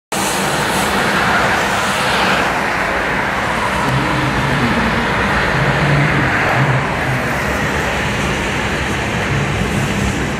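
Road traffic on a multi-lane road: a steady rush of tyres and engines from passing cars, with one vehicle passing louder about two seconds in.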